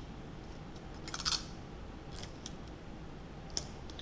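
Hands handling papers on a desk: a short rasping burst of quick clicks about a second in, then a few faint ticks.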